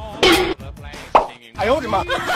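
Added soundtrack of music and a voice, with a short rising cartoon-style plop sound effect about a second in.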